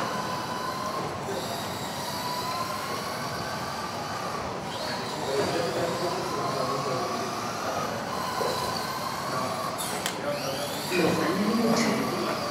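Several electric RC cars racing, their motors and gears giving a steady whine whose pitch slowly rises and falls with the throttle.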